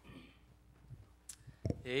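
Quiet room with a couple of sharp clicks, then a man starts speaking near the end.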